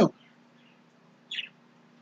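A single short, high chirp about a second and a half in, over a faint steady hum; otherwise near silence.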